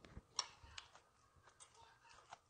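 Faint, sparse clicks of metal chopsticks picking food from a small dish, with one sharper click about half a second in.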